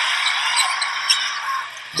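Thin, tinny arena crowd noise from a basketball game broadcast, with faint play-by-play commentary under it.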